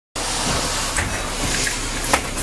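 Steady interior noise of a moving city bus: its engine running and its tyres hissing on a wet road, with a couple of faint rattles.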